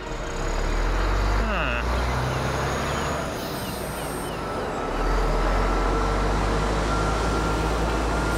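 Cartoon sound effect of a heavy truck's engine running as it drives, a steady low rumble that grows louder about five seconds in, with a brief falling tone about a second and a half in.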